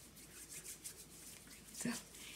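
Hands rubbing together to spread butter over the palms and fingers: faint, soft, repeated swishing strokes.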